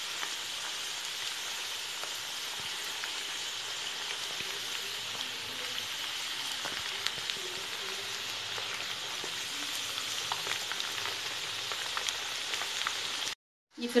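Parboiled potato pieces deep-frying in hot oil in a kadhai: a steady sizzle with fine crackling. The sound cuts out briefly near the end.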